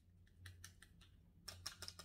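Faint light clicks and taps of makeup tools being handled, a few about half a second in and a quicker cluster near the end, over quiet room tone.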